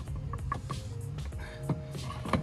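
Background music with steady held notes, and a short click near the end.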